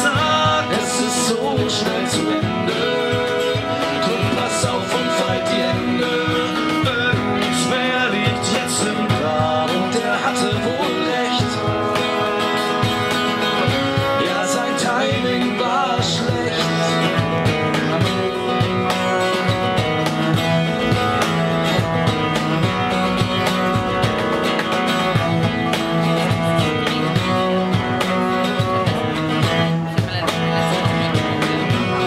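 Live acoustic band music: strummed acoustic guitar and cello, with a cajón keeping a steady beat.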